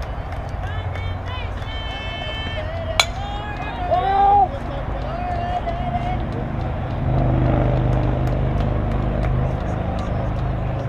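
A fastpitch softball bat hitting a pitched ball: one sharp crack about three seconds in, followed at once by loud shouting from players and spectators.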